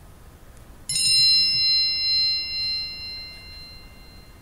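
A 'bing' chime sound effect, a bright bell-like tone struck once about a second in that rings and fades over two to three seconds: the signal to pause and write down an answer.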